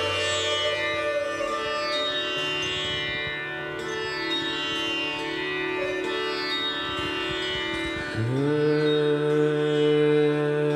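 Bowed Indian string instruments, dilrubas and taus, playing a slow raag Bihagara melody in long held notes over a tanpura drone, with no tabla. About eight seconds in, a louder low note slides up and holds.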